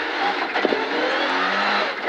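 Rally car engine accelerating hard through the gears, heard from inside the cockpit, with a brief break in the note about two-thirds of a second in.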